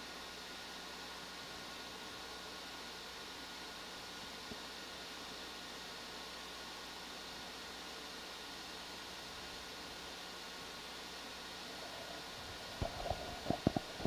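Steady low hiss with a faint hum, the background noise of the audio feed, with a few short clicks near the end.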